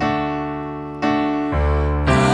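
Stage keyboard playing a slow instrumental passage of sustained piano-like chords. New chords are struck at the start and about a second in, and a deep bass note enters at about one and a half seconds; each one fades slowly after it is struck.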